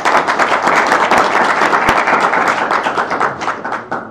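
Audience applauding, many hands clapping together, tailing off at the end.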